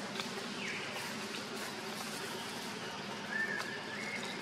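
Macaque calls: a short high squeak falling in pitch just under a second in, then a longer thin call that rises and holds near the end.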